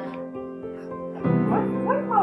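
Soft background music, joined in the second half by a baby's short, high vocal sounds that glide up and down in pitch.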